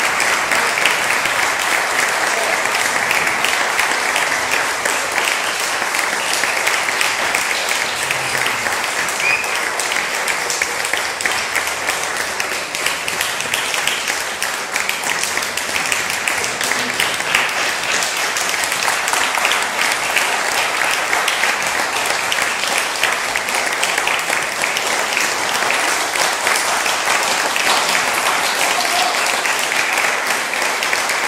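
Audience applauding: dense, steady clapping that eases a little about halfway through, then picks up again.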